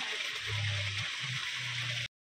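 Steady rush of flowing water.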